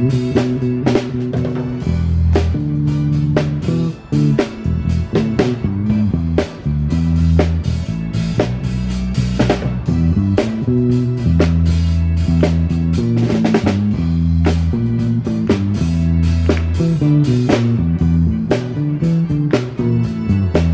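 Small live band playing: drum kit, electric guitar and vibraphone, over a bass line of held low notes that change about every second.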